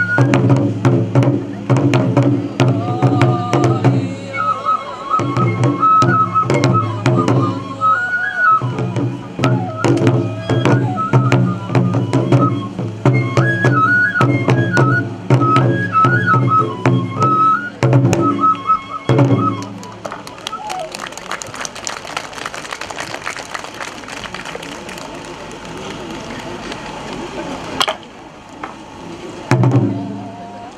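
Kagura music: a bamboo flute plays an ornamented melody over two large barrel drums beaten in a steady rhythm. About twenty seconds in the flute and drums stop, leaving a quieter hiss with a single sharp knock near the end, and the drums come back in at the very end.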